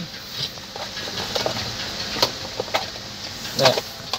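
Steady background hiss inside a car's cabin, with a few faint clicks and one brief spoken sound near the end.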